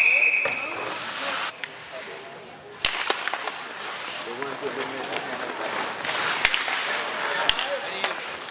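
Ice hockey play in a rink: three sharp cracks of sticks striking the puck, spaced a few seconds apart, over spectators' chatter. A short high whistle tone sounds at the very start.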